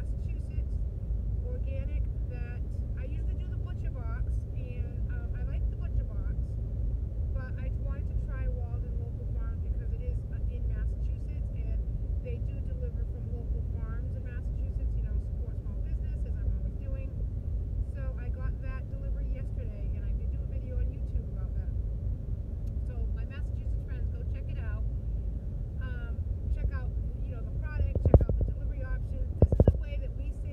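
Steady low road and engine rumble inside a moving car's cabin, with a woman talking over it.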